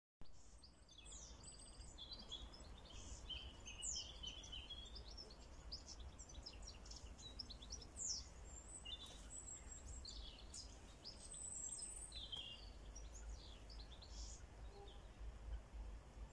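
Small birds singing, a busy run of short chirps and quick whistled notes, over a steady low rumble.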